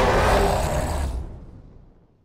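Loud rumbling film-trailer sound effect under the title card, with a faint held tone inside it, fading out over the last second.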